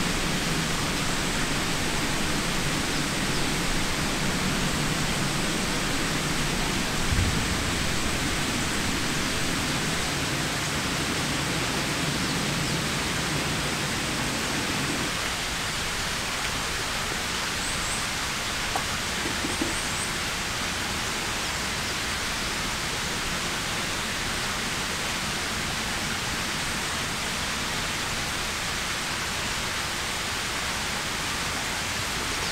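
Steady rushing water noise, with a deeper low rumble in the first half that drops away about halfway through. There is a single thump about seven seconds in.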